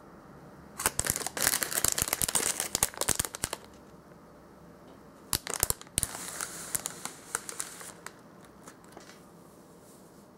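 Plastic wrapper of a Popin' Cookin' candy kit crinkling as it is handled and turned over, in two spells of crackly rustling: from about a second in to three and a half seconds, and again from about five to eight seconds.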